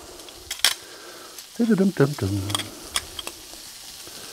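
Meatballs frying gently in oil in a frying pan, a steady quiet sizzle, with a few sharp clicks of metal kitchen utensils.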